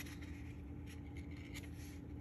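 Faint rubbing and scraping of cardstock being slid and pressed into position on a cutting mat, with a few soft scrapes about a second in.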